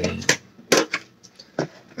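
Crumpled plastic shrink wrap crinkling and a Pokémon TCG metal lunch-box tin being handled, giving about five short crackles and light knocks over two seconds.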